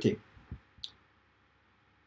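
A faint low tap and then a short, sharp click as a GoPro camera and its cable are handled on a desk.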